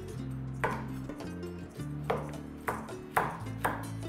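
Chef's knife slicing a zucchini into rounds on a wooden cutting board: five sharp knife-on-board taps, coming faster toward the end, over background music.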